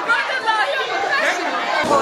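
Several people talking and calling out over one another in a room: party chatter.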